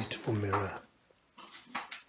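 A short, low vocal murmur from a man, then a quick cluster of sharp clinks and rattles of hard objects about a second and a half in.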